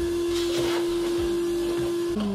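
Vacuum cleaner run in reverse as a blower, its wand aimed into an open desktop PC case to blow dust out of the fans. The motor runs steadily with one held tone over the hiss of the blown air.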